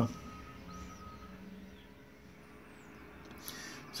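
Quiet background hiss and hum with a faint steady tone that fades out about a second in.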